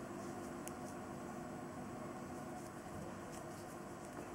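Low steady room hum with a few faint ticks and rustles from a metal crochet hook and cotton yarn being worked into puff stitches.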